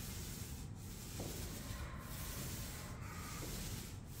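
Airless paint sprayer hissing steadily as paint is sprayed onto a ceiling from a pole extension, with short breaks in the hiss about once a second.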